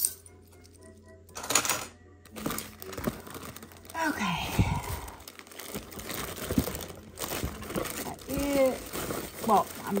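Plastic bags and bubble-wrap packing crinkling and rustling as hands rummage through a cardboard parcel, with a burst of crinkling about a second and a half in and light knocks among the rustle.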